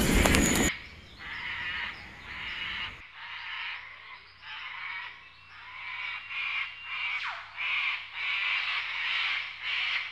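A loud sound, likely music, cuts off suddenly under a second in. After it comes night-forest ambience: short animal calls repeating unevenly, about two a second.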